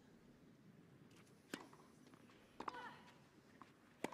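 Tennis racket striking the ball twice on a clay court, about a second apart, a serve and its return, in an otherwise hushed stadium.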